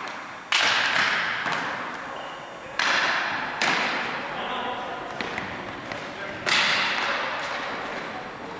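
Ball hockey play: sharp cracks of sticks striking the ball and each other, four loud ones about half a second, three, three and a half and six and a half seconds in, with smaller knocks between, each ringing on in a large echoing gym.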